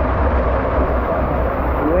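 Steady rushing of water pouring down the tube of a pool water slide, with a low rumble beneath it. A voice rises near the end.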